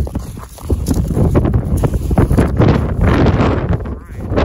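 Wind rumbling on the phone's microphone, with footsteps crunching in snow, louder from about a second in.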